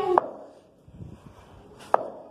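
Two sharp knocks about a second and a half apart, the first right as a child's shout cuts off.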